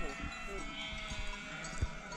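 A flock of sheep bleating in the distance, several overlapping calls at once, with a single sharp knock near the end.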